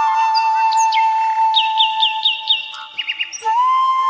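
Background music: a flute holds one long note, with a quick run of high bird chirps over it midway and a few more just before the flute moves to a new note near the end.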